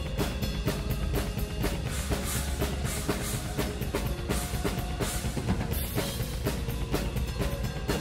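Live symphonic metal played back from a drumcam recording, the drum kit to the fore: rapid, even bass drum and snare strokes under cymbal wash, with the band behind.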